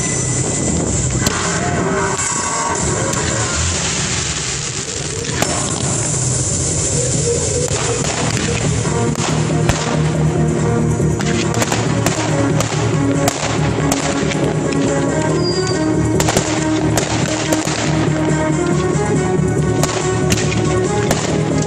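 Fireworks going off over a music soundtrack. At first the ground fountains give a steady hiss, then repeated sharp bangs and cracks come as comets and shells are fired, with music running throughout.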